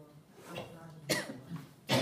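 A person coughing: two sharp coughs, one about a second in and one near the end, part of a run of coughs spaced under a second apart.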